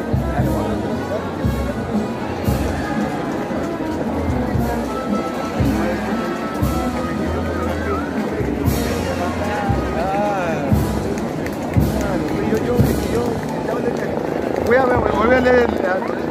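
A band playing music with a steady beat and sustained low bass notes, mixed with the voices and chatter of a dense crowd. Voices rise near the end.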